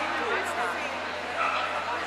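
A dog barking in short yips over the background chatter of voices in a large hall.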